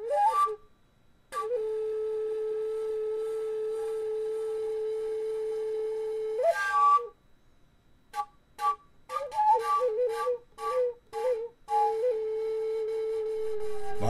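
A flute playing a slow, plain melody: a long steady held note, a quick upward run, then a string of short separate notes and another long held note near the end.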